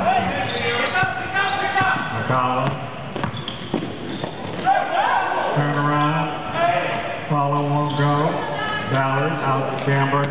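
Men's voices talking and calling out in a gym during a basketball game, with a basketball bouncing on the hardwood floor now and then.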